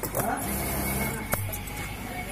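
Industrial sewing machine stitching with a steady hum, stopping with a sharp click about a second and a half in.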